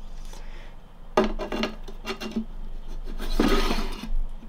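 Glass tarantula enclosure being handled while its door is tried for fit against a cork bark piece: a sharp knock about a second in, then glass rubbing and scraping, loudest shortly before the end.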